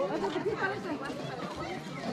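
Several people chatting at once: overlapping voices of a gathered crowd, with no one voice standing out.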